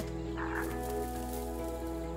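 A single sharp pop at the very start as the dart rifle fires at a cheetah, followed by background music of steady held tones.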